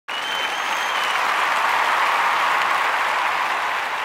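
Crowd applause, a dense steady clapping that starts abruptly and slowly fades out toward the end, with a brief high whistle over it in the first second.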